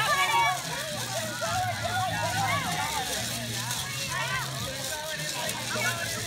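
Crowd of onlookers chattering, adults and children talking over one another with no single voice standing out, over a low steady hum, like an idling engine, that fades in and out.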